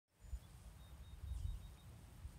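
Faint outdoor background: an uneven low rumble, with a few faint, short, high-pitched chirps through the second half.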